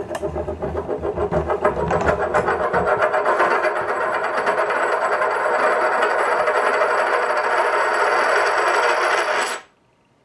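A silver bullion coin spinning and wobbling down on a wooden tabletop: a rattling whirr of rim-on-wood clicks that grows faster and louder as the coin settles, cutting off suddenly near the end.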